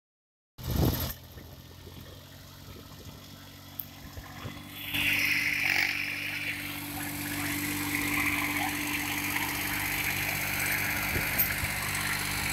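Diesel engine of a VST Mitsubishi Shakti VT224-1D 22 hp tractor running steadily while it pulls a seed drill, louder from about five seconds in. A brief loud burst comes just after the start.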